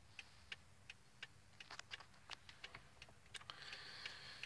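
Near silence inside a parked car, with the faint, steady ticking of the hazard-light flasher, about two or three clicks a second.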